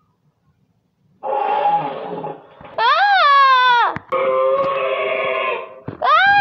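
A child growling and shrieking like a monster, starting about a second in: a rough growl, a high shriek that rises and falls, then another long growl.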